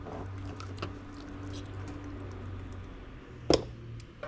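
Wet catfish pieces being laid into a plastic batter box of cornmeal: soft squishing and light clicks of fish against plastic, with one sharper knock about three and a half seconds in.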